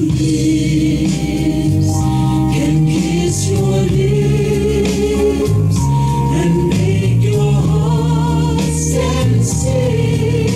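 Backing track of a slow soul ballad playing, with held choir-like backing-vocal harmonies over a steady bass line.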